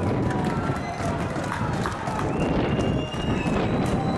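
Open-air ambience of a football match picked up by a camcorder's own microphone: a steady rumbling noise with distant voices from the pitch and stands, and faint thin tones that come and go.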